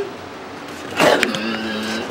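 Human beatbox vocal effect: a sharp burst about a second in, sweeping down into a held low hum.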